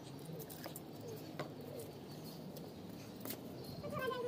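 Faint bird calls, short low cooing glides recurring every second or so, with a few light clicks.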